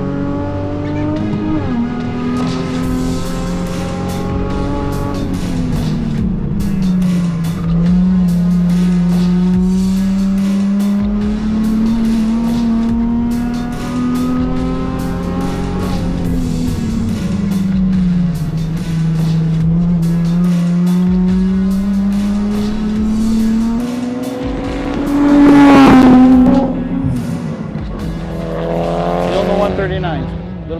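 Nissan Z's V6 engine working hard at speed, heard from inside the cabin. The revs climb slowly and drop back quickly twice, then rise to the loudest, highest-revving stretch near the end before falling and climbing again.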